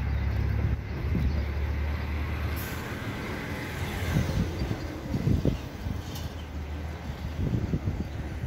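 Steady low outdoor rumble, heavier at the start and again near the end, with a few soft knocks in between.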